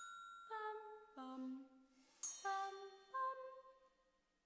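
Soprano and alto voices singing slow, wordless sustained notes that move to a new pitch about every half second. Struck metal bell-like tones ring out over them twice, at the start and about two seconds in.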